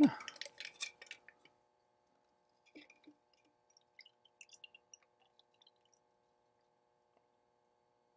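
A stainless cocktail shaker with its strainer being poured into an ice-filled glass. It clinks a few times in the first second or so, then gives faint, scattered drips and ice ticks over a faint steady hum.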